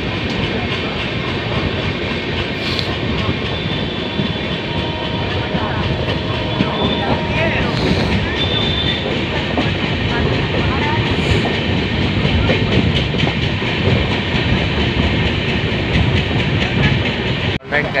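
Running noise of the Kerala Express passenger train, its coach wheels moving steadily over the rails, heard loud from an open coach doorway.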